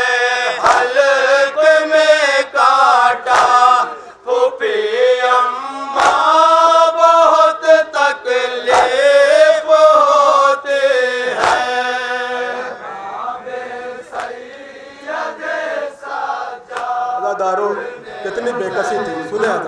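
A group of men chanting a Shia noha (mourning lament) in unison, with sharp slaps of matam chest-beating roughly every three seconds in time with the verse. About two-thirds of the way through, the chant breaks off into quieter, scattered voices.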